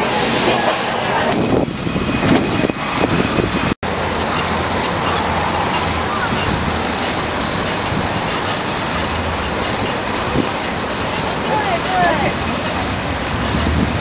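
Street traffic noise; after an abrupt cut about four seconds in, a steady rush of road and wind noise from riding in the moving pedicab.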